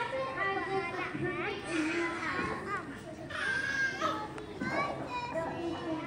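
Hubbub of many children's voices talking over one another, with no single clear speaker.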